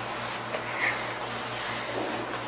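Quiet room noise with a steady low hum, and faint soft rustles of gi fabric and bodies shifting on the mat a little after the start.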